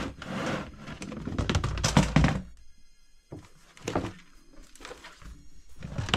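A clear plastic storage box sliding and scraping on the floor as it is pulled out, and its lid being opened, with a few hollow plastic thunks, over background music.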